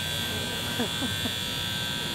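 A steady, high-pitched electric buzz that starts and stops abruptly, with faint voices underneath.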